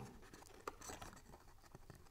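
Faint rustling and a few light ticks of cardstock pieces being handled and pressed together.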